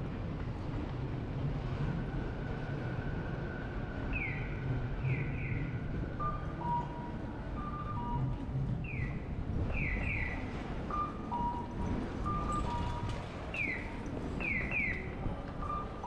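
Three times, an identical group of bird-like electronic chirps sounds over steady street and traffic noise: one falling chirp, then two quick ones close together, the group repeating about every five seconds. Faint tones come and go between them.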